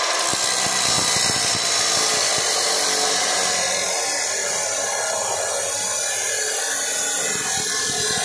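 Abrasive chop saw running under load, its cut-off disc grinding steadily through a metal rod with a loud, even, hissing grind.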